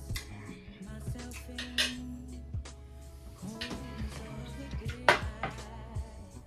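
Background music playing, over the clinks of a metal fork and a plate. The loudest is a sharp knock about five seconds in, as the plate is set down on the table.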